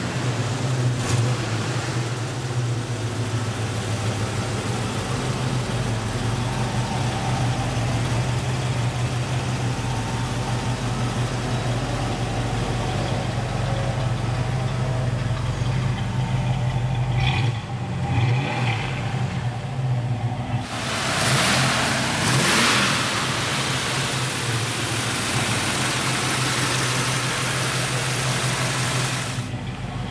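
1973 Plymouth 'Cuda's V8 engine running at a steady idle, revved up briefly about twenty seconds in before settling back to idle.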